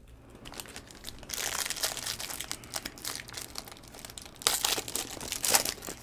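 Red foil wrapper of a Donruss UFC trading-card pack crinkling and tearing as the pack is opened, in two spells of crackly rustling, the second and louder one starting about four and a half seconds in.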